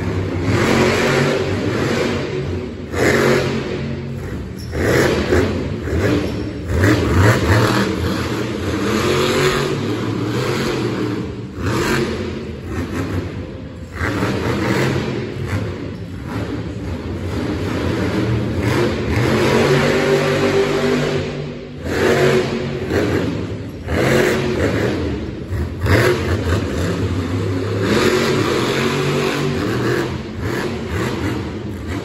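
Monster truck's supercharged V8 engine revving hard during a freestyle run, its pitch climbing and dropping back over and over as the truck accelerates between jumps.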